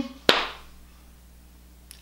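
A single sharp click about a third of a second in, then quiet room tone.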